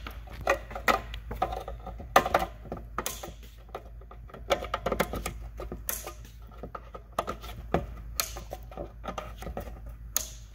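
Plastic wiring-harness connectors being worked and pushed into the sockets of a Subaru ECU, a run of irregular plastic clicks and knocks, the loudest about two seconds in.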